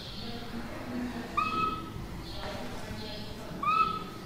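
Whiteboard marker squeaking twice on the board as lines are drawn, each squeak short and high with a quick upward slide, with soft scratching of the marker strokes between them.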